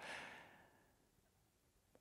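Near silence: a brief, faint breath at the very start, fading within half a second, then dead silence.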